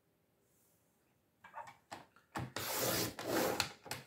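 Sliding-blade paper trimmer cutting a strip of cardstock: silent at first, a couple of short clicks about a second and a half in, then about a second and a half of steady scraping as the blade runs along the rail.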